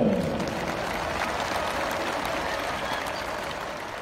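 Stadium crowd applauding, a steady patter that slowly fades.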